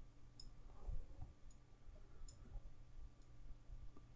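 About four faint computer mouse clicks while a curve point is dragged, over a low steady electrical hum.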